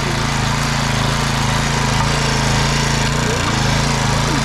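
Yanmar MT3e mini tiller's small petrol engine running steadily under load as its tines churn through dry soil, with a brief dip in the engine note about three seconds in.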